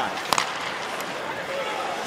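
Ice hockey arena during live play: a steady crowd hum, with a sharp crack about a third of a second in from a stick hitting the puck, and a fainter knock about a second in.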